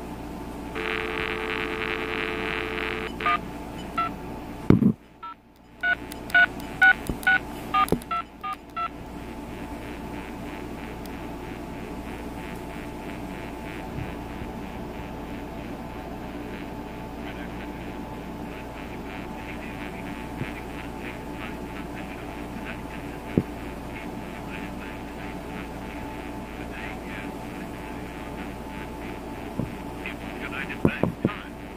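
Cordless phone handset giving a steady dial tone for about two seconds, then a quick run of short touch-tone (DTMF) key beeps as a number is dialled. After that comes a steady faint hum of the open line.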